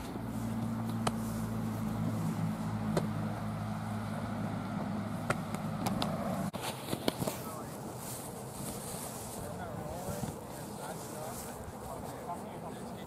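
An engine hums at a steady pitch, then cuts off abruptly about six and a half seconds in, with a few sharp clicks over it.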